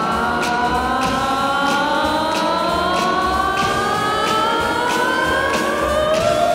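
Figure-skating program music: several sustained tones glide slowly upward in pitch together over a few seconds, over a regular beat about every two-thirds of a second.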